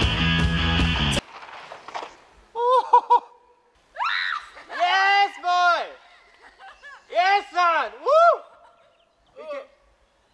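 Rock music cuts off about a second in. It is followed by several short bursts of high whooping calls that rise and fall in pitch, from a person yelling.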